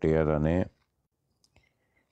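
A man reading aloud speaks one drawn-out word, then pauses, with a single faint click during the pause.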